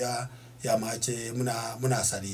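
A man speaking into a studio microphone, with a short pause about half a second in.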